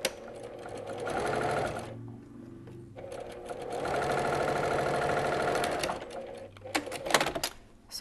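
Domestic sewing machine stitching a diagonal seam through two strips of cotton bias binding, in two runs: a short burst of about a second, then a steady run of about three seconds. A few sharp clicks follow near the end.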